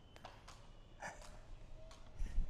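Very quiet: a faint breath about a second in, with a few light ticks.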